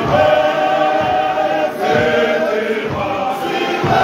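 Male voice choir singing in full harmony, with low thuds of feet stamping in time about once a second.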